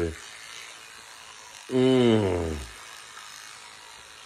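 Battery-powered electric toothbrush buzzing steadily while brushing teeth. About two seconds in, a man hums once, a falling closed-mouth sound lasting about a second.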